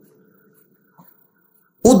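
A man's voice through a microphone and loudspeakers: the tail of his last words fades away into near silence, a faint short click about halfway, and then he starts speaking again loudly just before the end.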